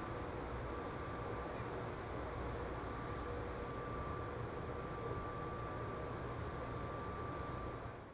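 Ride noise inside the Plane Train, Atlanta airport's underground people mover, running through its tunnel: a steady rumble with a faint, steady high whine.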